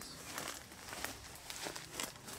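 Faint footsteps and rustling through tall grass, a scatter of soft short crackles.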